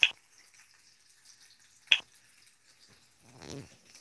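Two short sharp clicks about two seconds apart in a quiet room, then faint rustling as the camera is handled and moved near the end.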